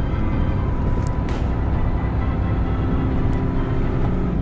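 Steady low rumble of a large truck's engine and road noise, heard inside the cab while driving.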